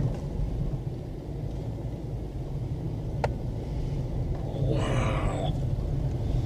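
Steady low rumble of a car driving, heard from inside the cabin, with a single sharp click about three seconds in and a short hissing rustle near the end.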